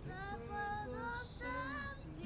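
A boy singing in Spanish, a few held notes that bend in pitch, with the hiss of an 's' about a second in, over acoustic guitar.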